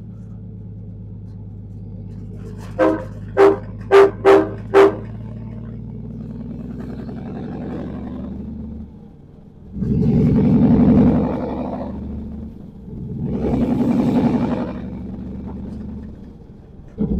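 Dump truck's diesel engine droning heard inside the cab, with five quick horn toots about three seconds in. In the second half the engine note drops briefly, then swells louder twice.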